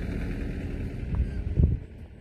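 A steady low rumble of outdoor background noise, swelling briefly about one and a half seconds in, then dropping away near the end.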